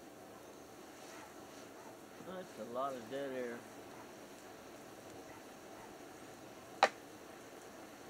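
Wood fire burning in a metal fire pit with a low steady hiss. A little over two seconds in, a person's wordless voice wavers up and down in pitch for about a second and a half. Near the end comes one sharp click, the loudest moment.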